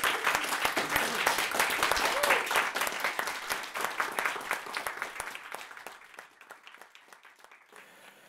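A small audience clapping. The applause starts dense and then thins out and fades away over the last few seconds.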